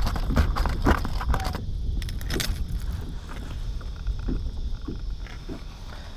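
Handling noise from landing a small fish in a plastic kayak: a run of small clicks and knocks over the first two seconds or so, then quieter, over a steady low rumble.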